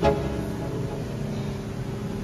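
Background music: a plucked-string note struck right at the start and left ringing as it slowly fades.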